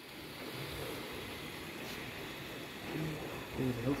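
Faint, indistinct voices over a steady background of room noise; the voices grow a little clearer near the end.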